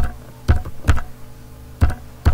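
Computer keyboard keys being typed: four separate, sharp keystrokes, unevenly spaced, with a longer gap before the last one.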